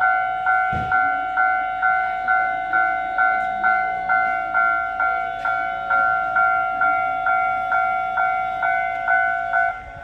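Japanese railway level-crossing warning bell ringing in a steady ding-ding rhythm of about two strikes a second, each strike a pair of bright tones. It cuts off near the end.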